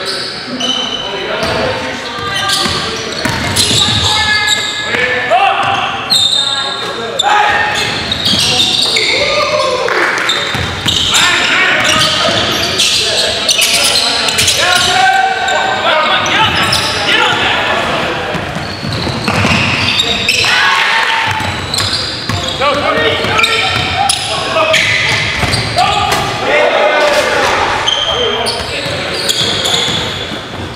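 Basketball game in a gymnasium: a ball bouncing on a hardwood court amid players' indistinct voices and calls, echoing in the large hall.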